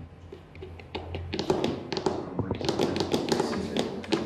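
Rapid, irregular tapping and clicking on a laptop keyboard, starting about a second in.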